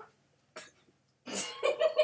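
A woman laughing in quick breathy bursts, starting just over a second in after a near-silent pause.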